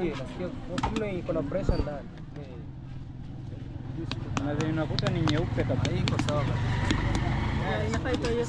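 Knocks on a whole watermelon held up to the ear, a ripeness test by its sound, among background voices. A motor vehicle's low rumble builds through the second half.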